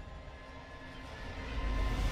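Film soundtrack: a quiet sustained drone with faint steady tones, under which a deep low rumble swells up in the last half second.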